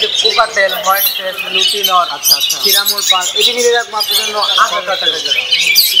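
A crowd of caged budgerigars and cockatiels chattering and squawking without a break, many short high calls overlapping.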